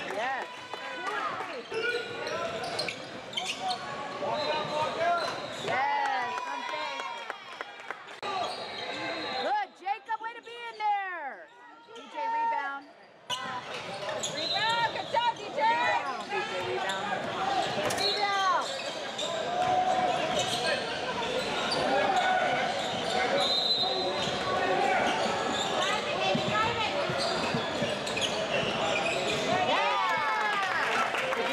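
Live basketball game sound in a large gym: sneakers squeaking on the court in many short chirps, the ball bouncing, and players and onlookers calling out, all with hall echo.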